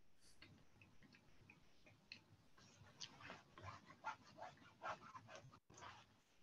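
Near silence, with a string of faint, short clicks in the second half.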